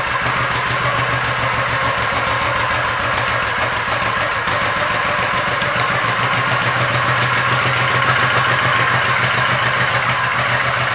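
1998 Honda Shadow Spirit 1100's 1099 cc V-twin engine idling steadily through its stock chrome dual exhaust, with an even, lumpy pulse.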